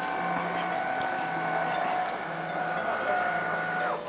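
A clap-activated electric curtain's drive motor running with a steady whine as it pulls the curtain along its track, stopping suddenly near the end.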